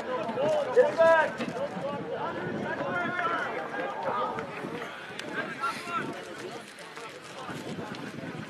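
Rugby players shouting to each other across an open pitch, several voices that are loudest in the first second.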